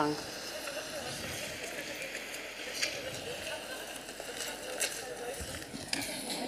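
The soundtrack of a short film played over a hall's loudspeakers: low outdoor street noise with faint voices and a few short clicks.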